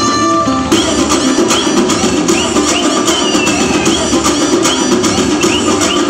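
Bollywood dance song playing loudly. Just under a second in, a plucked-string passage gives way to a fuller section with a steady drum beat and repeating sliding high notes.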